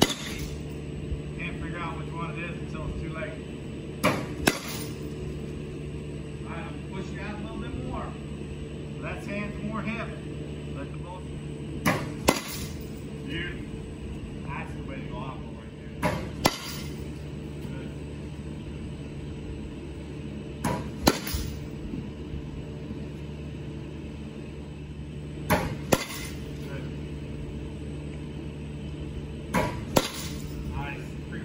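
Softball bat striking pitched balls six times, about every four seconds, each sharp crack paired with a second knock less than half a second apart, over a steady low hum.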